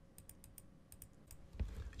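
Faint, quick clicks from a computer keyboard and mouse: keys being pressed and the view being zoomed, about a dozen sharp ticks.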